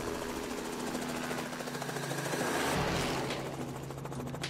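Robinson R44 helicopter's rotor chopping rapidly as it flies low past. It grows louder until about three seconds in, then eases slightly.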